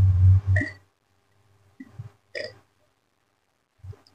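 Loud, deep gulping and throat sounds from a man drinking from a plastic cup close to the microphone, ending within the first second. A few faint mouth and lip clicks follow.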